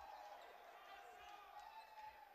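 Near silence: faint room tone of a large, mostly empty gym, with faint distant voices.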